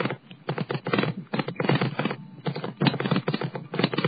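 A bicycle and the camera riding on it rattling over the pavement: a rapid, irregular run of clicks and knocks.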